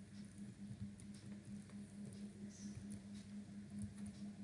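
Faint computer keyboard typing, a few soft scattered key clicks, over a steady low electrical hum.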